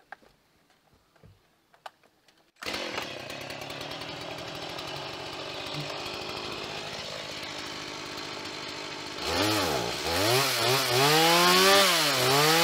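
Gas chainsaw starting up about two and a half seconds in and running steadily, then revved up and down repeatedly near the end, its pitch rising and falling as it is brought up to the top log.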